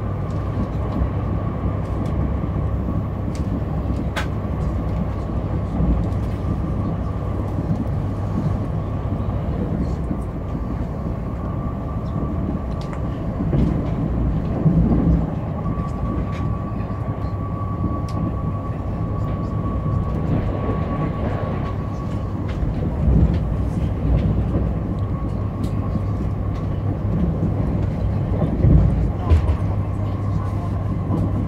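Onboard running noise of an electric commuter train at speed: a steady rumble of wheels on rail with a faint high whine. It swells louder a few times along the way.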